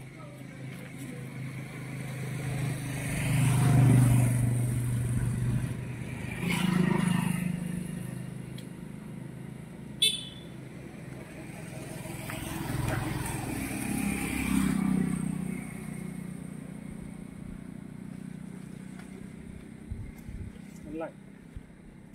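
Motor vehicles passing one after another, each rising and falling over a few seconds. There is a single sharp click about ten seconds in.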